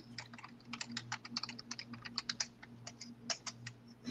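Typing on a computer keyboard: a quick, irregular run of faint key clicks, over a low steady hum.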